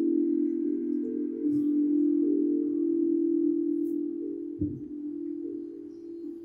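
Show's background music cue: a held chord of chime-like tones, steady and then slowly fading out over the last two seconds, with one soft low thud about four and a half seconds in.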